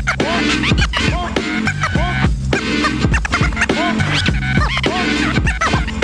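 Vinyl scratching on turntables over a hip hop beat with a steady bassline: records pulled back and forth in quick cuts, making many short rising-and-falling sweeps, with a brief pause in the scratches a little past two seconds in.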